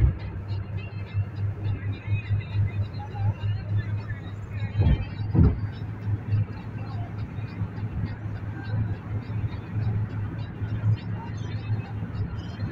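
Car driving on a highway, heard from inside the cabin: a steady low rumble of engine and road that pulses unevenly, with two low thumps about five seconds in.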